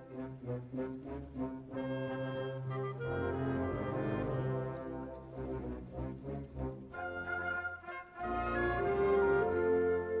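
Symphonic wind band playing, with French horns and low brass holding chords under short, repeated accented notes. The sound thins briefly about eight seconds in, then swells into a louder sustained chord.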